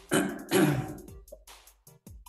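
A man clearing his throat in two quick rasps, the second a little longer, over quiz countdown music with a steady beat.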